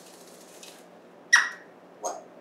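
An African grey parrot gives one short, sharp squeak about a second and a half in. Before it comes a faint rustle as the bird shakes out its feathers.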